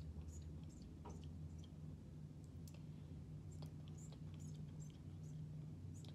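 Fingertips dabbing and blending foundation on a face: faint, irregular small clicks and soft skin ticks, a few a second, over a steady low room hum.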